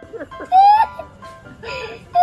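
A young boy crying: a high, wavering wail that rises about half a second in, breaks off, and starts again near the end, over faint background music with held notes.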